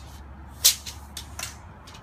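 Steel tape measure being handled and repositioned against a metal door frame: one sharp click about two-thirds of a second in, then a few lighter ticks, over a faint low rumble.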